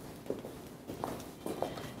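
A few quiet, irregular footsteps with heels clicking as several people walk and change places.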